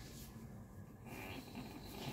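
Faint rustle of a cotton crop top being pulled up and off over the head, growing louder about halfway through.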